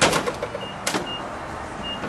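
Two sharp clicks about a second apart over a steady gas-station background hum, from the fuel door, cap and nozzle being handled at an SUV's filler. Short high beeps sound in between, like a fuel pump's keypad.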